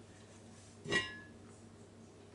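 Lid of an enamelled oval casserole clinking once against the pot's rim as it is lifted off, a single short ringing clink about a second in.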